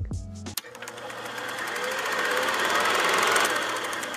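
A fast, even mechanical clatter begins with a sharp click about half a second in, swells to its loudest around three seconds and eases toward the end.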